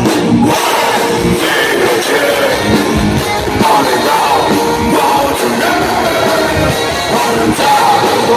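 Live rock band playing loudly, with a male lead singer singing into a handheld microphone over drums and electric guitar.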